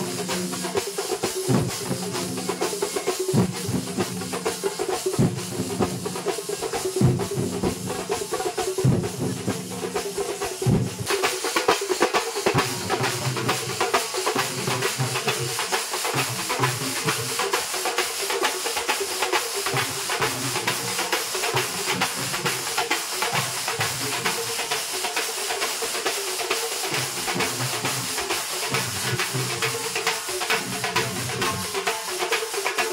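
A Kerala festival drum ensemble of chenda drums beats a fast, dense rhythm over a steady held tone. The cymbals grow brighter and fuller from about eleven seconds in.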